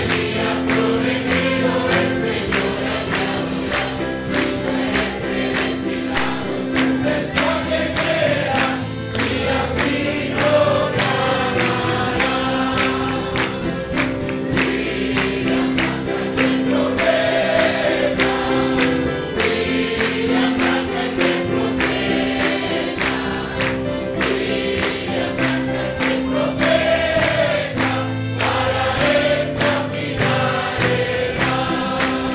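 Congregation singing a lively Spanish-language gospel hymn together, with hand-clapping on a steady beat about twice a second.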